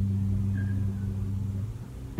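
Nylon-string classical guitar chord ringing out, its low notes fading and dying away about a second and a half in.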